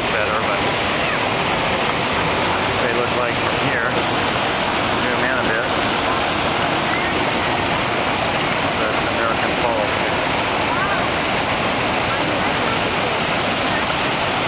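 Steady rushing of Niagara's American Falls, heard close up at the brink where the river pours over the crest.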